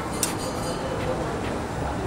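Steady background noise of a small eatery, with one short sharp click about a quarter second in.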